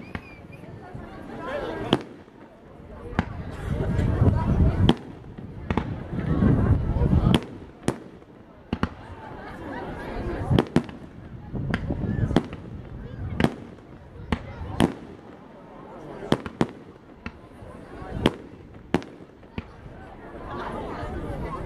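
Fireworks display, heard from a distance: irregular sharp bangs and cracks of bursting shells, at times several a second, with a few longer low rumbling booms among them.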